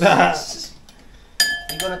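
A fork clinking against a glass mixing bowl of beaten eggs, about three quick strikes near the end, with a high ringing tone after the first.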